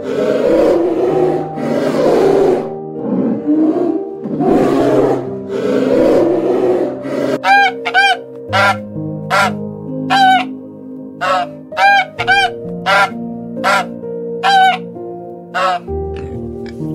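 A polar bear roaring in several long, rough calls, then, from about seven seconds in, a swan honking over and over, about one short call every two-thirds of a second, over soft background music.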